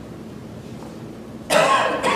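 A person coughs once, sharply and loudly, near the end, over quiet room tone.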